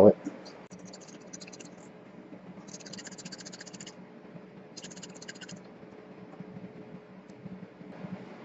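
Glass separatory funnel of ether and iron(II) sulfate solution being swirled by hand, giving two spells of rapid fine rattling, about three and five seconds in, over a faint steady hum.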